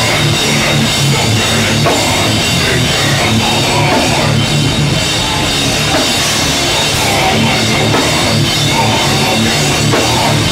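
A rock band playing live at full volume, with a loud drum kit driving the music. The sound is dense and steady, with no breaks.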